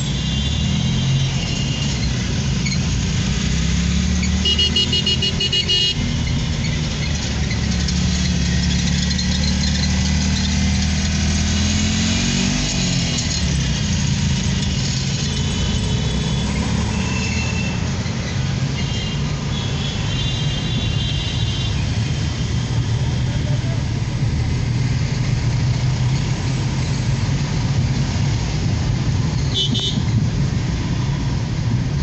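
City traffic heard from inside a moving car: the car's engine runs steadily, its note rising and falling in the middle, while other vehicles sound short horn toots several times.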